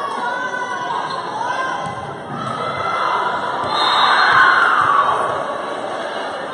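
Many voices cheering and shouting together in a gymnasium, rising to a peak about four seconds in and then easing off.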